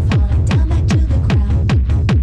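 Techno track: a heavy kick drum that drops in pitch on each hit, just over two beats a second, with no vocals.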